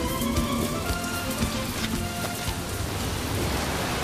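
Music fading out under the steady hiss of heavy rain.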